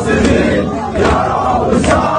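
A large crowd of men chanting loudly together in a mourning lament, with sharp beats from the crowd a little under a second apart.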